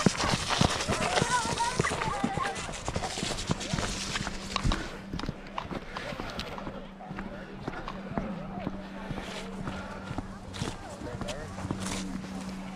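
Footsteps in boots walking over a rubber mat and onto wet pavement, many short knocks, under faint background chatter of people and children. A low steady hum comes in a few seconds in.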